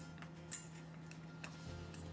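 Wooden chopsticks clicking against a stainless steel bowl as sliced vegetables are tossed in it: a few sharp, irregular ticks, the loudest about half a second in.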